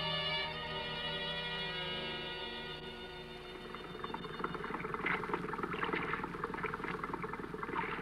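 A radio-drama musical bridge on bowed strings fades out over the first few seconds. It gives way to a sound effect of water splashing and lapping against a boat under way, over a low steady hum.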